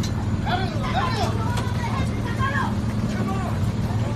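A flatbed tow truck's engine idling with a steady low hum, under several men's voices shouting close by.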